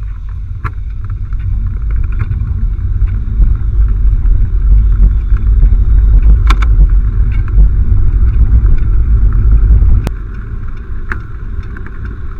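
Heavy low rumble of wind buffeting and road vibration on a bicycle-mounted camera's microphone while riding, growing louder toward the middle and dropping off sharply about ten seconds in. A few sharp clicks sound over it.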